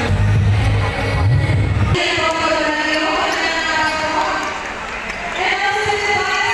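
Bass-heavy music over the arena's sound system, which cuts off suddenly about two seconds in. After that, many voices from the crowd and the court fill the echoing gym.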